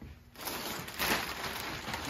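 Black plastic garbage bag crinkling and rustling as it is picked up and handled, starting about half a second in after a brief hush.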